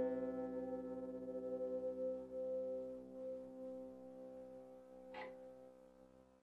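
Wire-strung Irish harp (clàirseach): two C strings, plucked an octave apart for tuning, ring on in a long, slowly fading sustain with a slight waver in loudness. There is a short soft noise about five seconds in.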